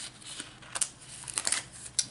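Coffee-dyed paper pages and flaps of a handmade accordion journal rustling as they are flipped and folded open by hand, with a few short, crisp rustles.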